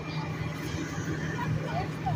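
Fire truck engine idling, a steady low rumble, with faint voices of people in the background.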